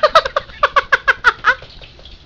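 A woman laughing hard in a quick run of high-pitched 'ha' bursts, about ten in a second and a half.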